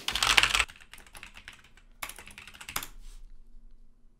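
Rapid typing on a computer keyboard: a dense run of keystrokes at the start, the loudest part, then softer scattered keys, another quick burst about two seconds in, and the typing stops about three seconds in.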